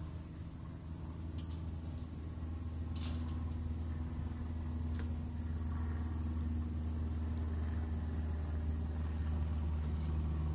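A steady low mechanical hum, slowly growing louder, with a few brief faint clicks.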